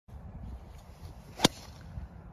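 A golf driver striking a teed-up ball: one sharp crack about one and a half seconds in.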